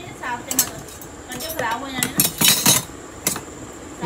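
Kitchen utensils and containers clinking and clattering as they are handled and packed, in a few sharp clatters with short gaps between.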